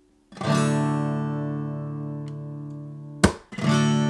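Acoustic guitar with a capo on the fifth fret, strummed once from the fifth string in an A major chord shape, which sounds as D major, and left to ring and fade. Near the end a short sharp click cuts the chord off and it is strummed a second time.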